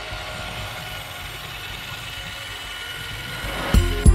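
Small electric motor of a remote-control amphibious monster truck running steadily as it drives across the water. Background music with a heavy beat comes in just before the end.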